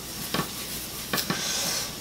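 A hot flat dosa griddle (tawa) being wiped by hand: a faint hiss with a few light scrapes and taps.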